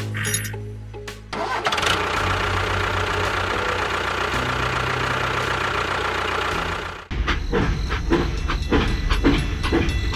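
Tractor engine sound running steadily, with background music. About seven seconds in it cuts abruptly to a faster, rhythmic chugging.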